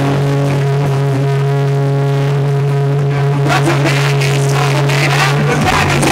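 Live rock band holding one sustained electric guitar note that rings steadily. Drum and cymbal hits come in about three and a half seconds in, and the full band comes back in near the end.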